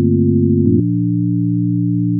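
Sustained low synthesizer chord made of steady pure tones, shifting to a new chord about three-quarters of a second in.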